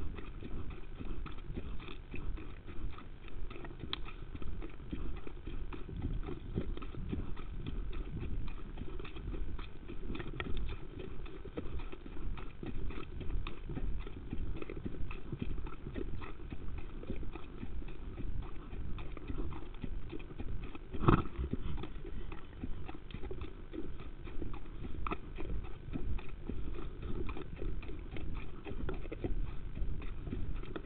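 A horse's hooves striking the ground at exercise in a steady run of hoofbeats, with one louder knock about two-thirds of the way through.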